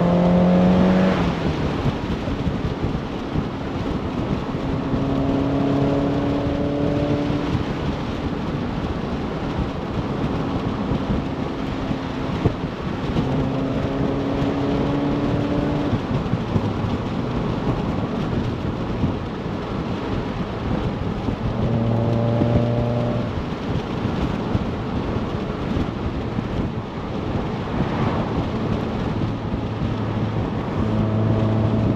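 Mazda MX-5 NC roadster with a BBR GTi Super 185 upgrade, its four-cylinder engine running on the road. The engine note falls at the start, then comes through in spells that climb slowly in pitch, over a steady rush of wind and road noise.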